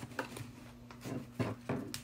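Faint handling of paper: a few soft taps and rustles as a narrow strip of patterned paper is moved and laid against a card, over a low steady hum.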